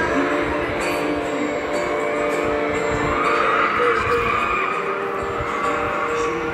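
Live acoustic guitar with a man singing along, amplified through a stage PA.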